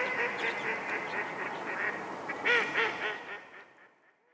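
Sound effect for an outro logo animation: a fast run of short, nasal, quack-like calls that rise and fall in pitch. They peak about two and a half seconds in and fade out near the end.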